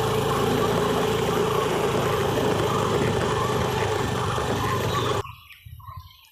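Motorcycle engine running steadily while riding, with wind rush over it; the sound cuts off suddenly about five seconds in.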